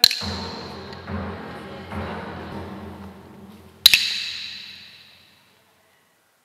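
Two sharp strikes on a small metal chime, almost four seconds apart, each ringing with a clear high tone that fades away over about a second and a half. The chime marks the bow between the chanted prayers.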